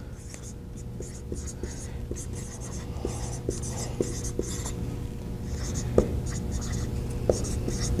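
Dry-erase marker writing on a whiteboard: clusters of short scratchy strokes as letters are drawn, with a few light taps, the loudest about six seconds in.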